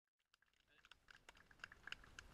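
Scattered hand claps from a small group of people, irregular and a few each second, fading in from silence and growing louder.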